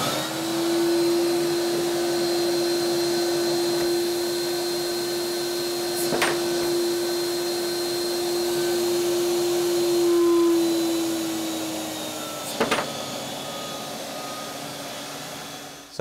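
FoxAlien HFS-800 HEPA vacuum motor running at full power with a steady hum and high whine, air rushing through the hose as it holds a metal block on the nozzle. A knock about six seconds in; about eleven seconds in the motor drops in pitch and level as the power is turned down, and a second knock follows as the block lets go of the nozzle.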